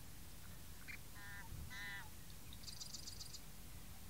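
Faint bird calls: a short high note about a second in, then two short nasal calls with several overtones, and a quick high-pitched trill of about eight notes near three seconds in, over a low steady rumble.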